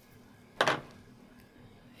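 Quiet room tone, broken about half a second in by one short breathy vocal sound, the start of the spoken word "a".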